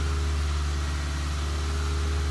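A steady low mechanical hum that runs on unchanged, with no audible creak or knock from the car being pushed.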